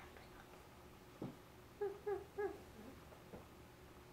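A child's voice, faint: one short falling note, then three short quick hummed notes in a row about two seconds in.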